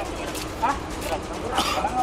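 Men's voices in short, sharp exchanges, including a questioning "Hah?", over a steady low background rumble.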